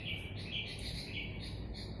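A bird chirping over and over in the background, short high calls about twice a second, over a low steady hum.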